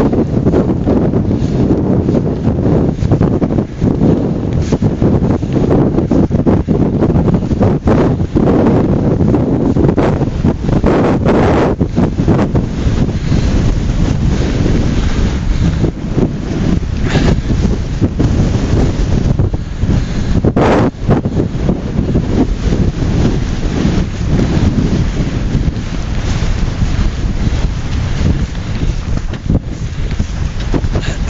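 Wind buffeting the camera microphone: a loud, continuous low rumble broken by frequent brief crackles and a few sharper bursts.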